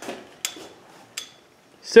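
Two short, light metallic clinks, about half a second and just over a second in, with a brief high ring after each: small metal parts knocking together.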